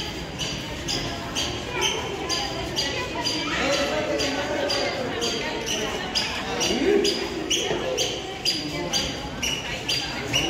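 Footsteps on a hard stone floor in a large hall, about two steps a second at walking pace, with the chatter of other people's voices.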